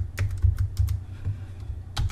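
Typing on a computer keyboard: several separate key clicks, with a sharper keystroke near the end, over a low steady hum.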